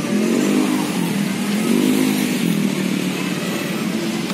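Motorcycle engine running nearby, its pitch rising and falling twice as it revs.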